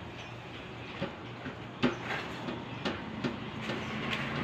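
Close-up eating sounds: chewing and wet mouth smacks while a boiled banana is dipped into fish paste on a plate, with several sharp clicks, the loudest about two seconds in, over a steady low background hum.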